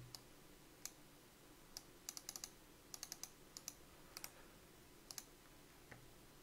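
Faint, scattered clicks and taps at a computer, some in quick runs of three or four, over near-silent room tone.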